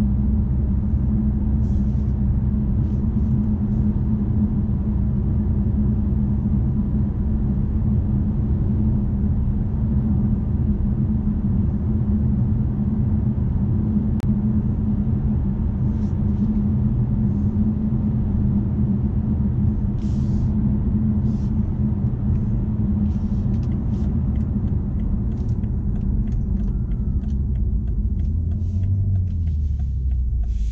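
Cabin sound of a BMW M550d xDrive on the move: its quad-turbo 3.0-litre inline-six diesel and the tyres make a steady low drone at cruising speed, easing off a little near the end.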